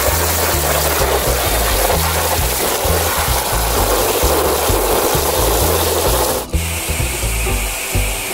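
Water spraying in an even hiss over a toy truck, with background music and a steady bass line underneath. About six and a half seconds in the spray stops suddenly and a steadier, duller blowing sound starts: the hot-air drying stage.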